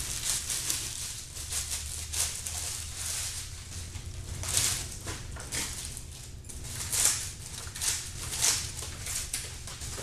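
Plastic bouquet sleeves crinkling and rustling in irregular bursts as flowers are handled and unwrapped, over a steady low hum.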